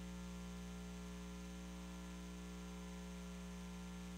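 Faint, steady electrical hum: a stack of even, unchanging tones with no other sound over it.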